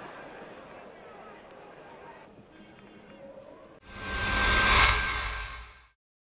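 Faint stadium crowd noise from the match broadcast, then nearly four seconds in a loud outro music sting swells up and fades out within two seconds.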